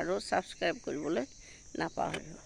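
Crickets chirping in a steady high-pitched drone under a woman's speech, which pauses about halfway through.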